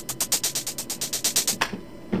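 A programmed hi-hat pattern playing back from FL Studio: quick, evenly spaced hits, about nine a second, each at a different loudness set by per-step velocity. Playback stops about a second and a half in.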